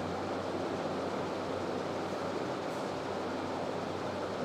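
Steady, even background noise of the room with no speech and no distinct events: a constant hiss with a low hum beneath it.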